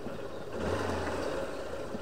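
Small motorcycle running at low speed with tyre and road noise as the rider slows to stop. A low engine hum swells for about a second in the middle.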